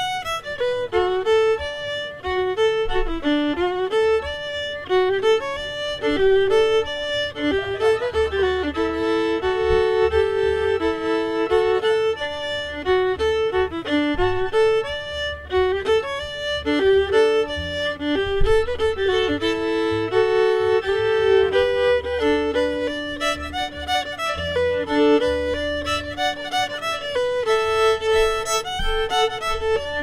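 Solo fiddle playing a lively old-time tune in the key of D, in standard tuning. It is a bowed melody moving note to note, and toward the end a held lower string sounds together with the tune.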